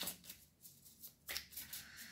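Tarot cards being handled and shuffled by hand: a few soft, brief rustles and slides of the cards against each other, quiet and spaced out.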